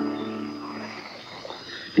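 The final chord of an acoustic folk song ringing out on guitar and fading away over about a second, leaving a faint hiss of an old tape recording.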